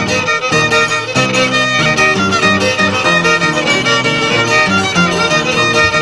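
Instrumental passage of an Andean huachua tune: a violin plays the melody over the plucked bass notes of an Andean harp, the bass stepping from note to note about twice a second.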